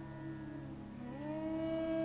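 Soft ambient background music: a sustained chord of several held tones that slides to a new chord about a second in and swells slightly.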